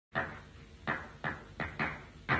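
Percussion strikes opening a song recording: five sharp hits in a quick, uneven pattern, beginning just after silence, with a dull, old-recording top end.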